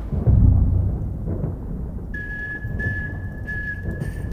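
Trailer score and sound design: a deep low rumbling boom, the loudest moment, that fades over about a second, then a single high steady tone held from about halfway through.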